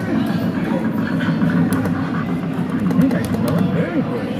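Indistinct background voices and chatter, with a few light clicks.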